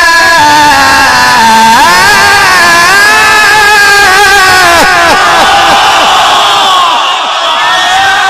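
A male Quran reciter holding a long melodic note in maqam rast that steps down in pitch, then an audience of men breaking into loud overlapping shouts of approval, several cries sliding down in pitch before they die away near the end.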